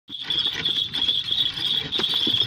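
A horse-drawn cart rolling along a dirt track: irregular soft knocks and rattles from the hooves and the cart, under a steady, high insect chirring.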